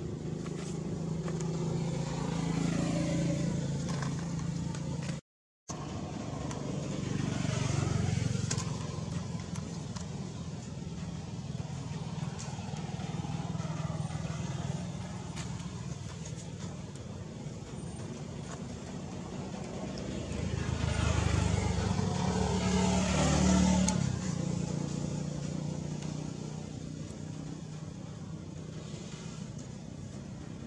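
Passing road traffic: the engine and tyre rumble of motor vehicles swells and fades several times, loudest about three quarters of the way through. The sound cuts out completely for a moment about five seconds in.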